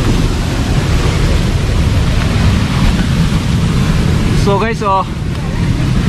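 Loud steady rush of a fast-flowing stream below a waterfall, with rumbling wind noise on the microphone. A person's voice calls out briefly about four and a half seconds in.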